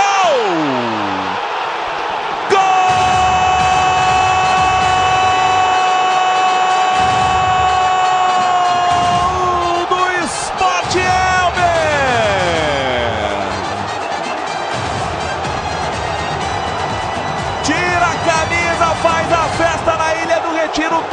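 A TV football commentator's drawn-out goal shout, held on one steady note for about seven seconds, followed by a second long call that slides down in pitch. A stadium crowd cheers underneath.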